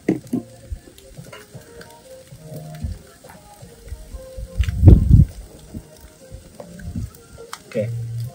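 Meat sizzling on a steel grill grid over a wood fire, with small clicks and scrapes as the pieces are turned with a fork. A loud low rumble about five seconds in.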